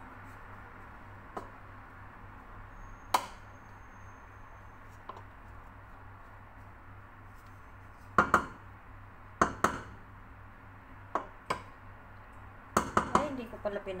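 Scattered knocks and clinks of kitchen utensils against a large stainless steel cooking pot: single taps early on, then clusters of sharper clinks a little past the middle and again near the end. A low steady hum lies underneath.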